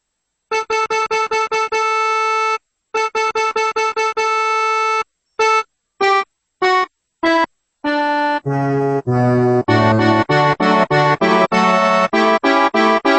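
Accordion playing a song's intro: quick runs of repeated notes on one pitch, each ending on a held note, then four separate notes stepping down in pitch. From about eight seconds in, bass notes and chords take over in a steady rhythm.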